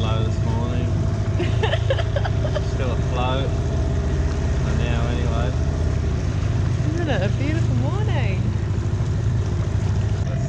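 Small outboard motor running at a steady cruising speed as it pushes an inflatable dinghy across the water, a constant low drone.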